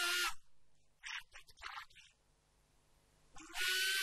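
A man's voice reciting into a microphone in short, drawn-out phrases with pauses between. A loud, hissing held sound comes right at the start and again near the end.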